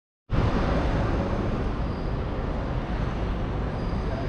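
Steady outdoor city background noise, a low rumble with a hiss above it, typical of road traffic in the distance.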